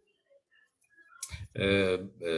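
Near silence for about a second, then a few short clicks and a man's voice starting about one and a half seconds in.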